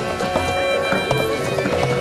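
Live hand-drum music: djembe-style drums playing a quick, busy rhythm under a wind instrument holding a melody in long sustained notes.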